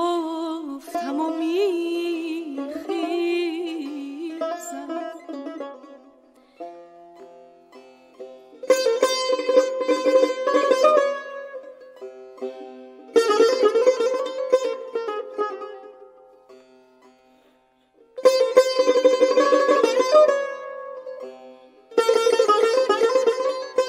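Persian tar and a woman's voice in the mode of Bayat-e Esfahan: a sung phrase with a wavering, ornamented pitch ends over light tar notes within the first few seconds. The tar then answers alone in three bursts of fast picked notes and tremolo, with short pauses between them.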